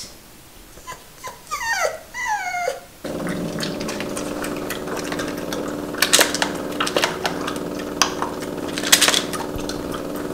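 Boston terrier whining, a few short falling whimpers. About three seconds in a steady hum starts suddenly, and over it the dog eats dry kibble from a plastic slow-feeder bowl with scattered sharp clicks and crunches.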